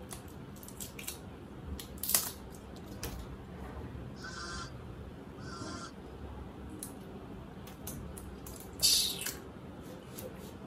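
Plastic seal wrapper being picked and torn off the cap of a bottled water bottle: faint rustling with scattered sharp crackles, the loudest about two seconds in and again near the end. Two brief pitched sounds come in the middle.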